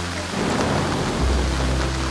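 Steady heavy rain, with a low rumble of thunder building a moment in.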